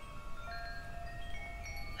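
Soft wind chimes ringing in the background, many clear tones at different pitches sounding one after another and overlapping, over a low steady hum.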